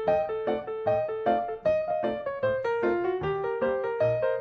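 Background music played on piano: a continuous melody of evenly paced notes.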